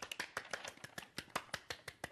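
Two people applauding with hand claps, a quick irregular patter that stops near the end.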